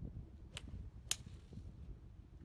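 A golf club striking a ball: two sharp clicks about half a second apart, the second louder, over a low wind rumble on the microphone.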